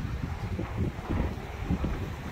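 Wind buffeting the microphone, an irregular low rumble.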